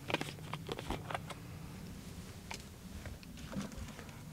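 Faint clicks and taps of a plastic jug's screw cap being twisted open and handled, mostly in the first second or so, with a few more clicks later.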